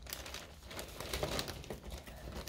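Clear plastic zip-top bag crinkling softly as hands handle it and settle its contents, in small scattered crackles.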